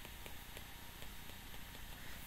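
Stylus tapping on a tablet's glass screen while handwriting: a quick run of faint ticks.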